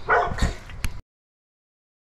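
A dog barks a couple of short barks, then the sound cuts off abruptly about a second in, leaving silence.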